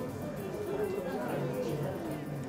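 Background chatter: other people's voices talking in the room.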